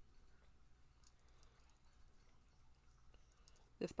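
Near silence with a few faint clicks from a makeup brush picking up powder eyeshadow in a palette.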